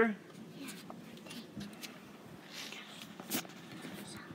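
Faint rustling and light clicks of handling, with one sharper click a little past three seconds in.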